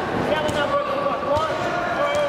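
Men's voices shouting across an echoing sports hall during a combat-sports bout, with a few sharp thuds of the fighters' blows and feet on the mat.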